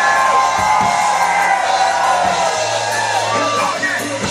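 Live concert music through a PA, with the crowd cheering and shouting over it and a voice holding long, drawn-out notes.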